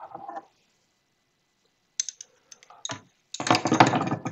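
Metal hand tools and tube fittings handled on a wooden workbench: a few light clicks about halfway through, then a louder run of clinking and clattering near the end.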